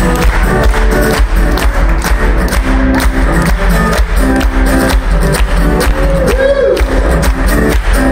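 Amplified acoustic guitar strummed in a steady, driving rhythm for a funk groove, with the crowd clapping along to the beat.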